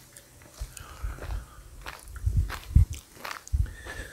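Footsteps and handling of a handheld phone camera: a series of irregular soft low thumps with a few faint clicks.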